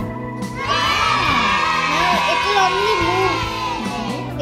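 A crowd of children cheering over steady background music; the cheering starts about a second in and dies away just before the end.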